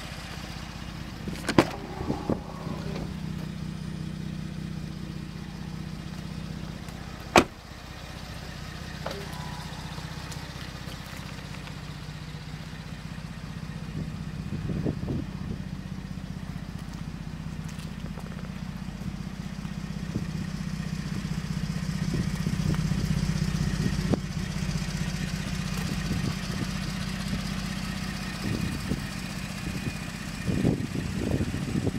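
Ford F-150's 3.5-litre twin-turbo EcoBoost V6 idling through a Magnaflow sport exhaust, a steady low hum that grows louder in the second half. Two sharp clicks cut through it, about one and a half and seven and a half seconds in.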